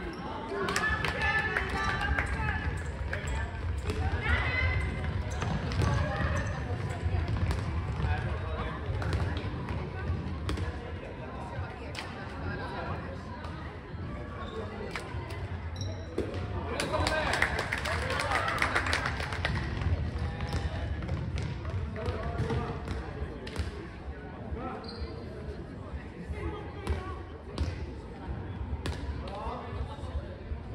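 Handball game sounds in an echoing sports hall: the ball bouncing on the hall floor and players' feet and hands on it, with voices calling out, loudest for a few seconds just past the middle.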